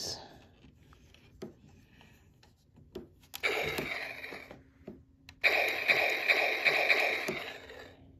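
Electronic sound effects from a battery-powered Zoids Liger Zero action figure, played through its small built-in speaker. There are two bursts: a short one a few seconds in that fades away, then a longer, steady one of about two seconds.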